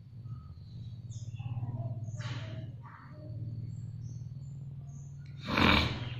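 Faint, short high chirps over a steady low hum, with a short burst of noise near the end.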